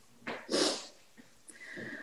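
A woman's breathy vocal sounds: a quick breath, then a short puff of air through the nose about half a second in, and a faint murmur near the end, as she smiles before answering.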